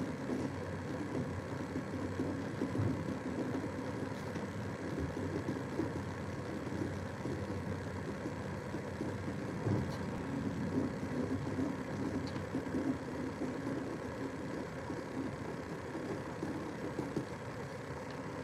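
Steady low background hum with a faint, indistinct murmur underneath and no distinct events.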